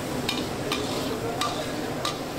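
A metal spatula stirring and scraping thick khichuri around a large karahi, with about three sharp scrapes against the pan. A steady sizzle of the frying mixture runs underneath.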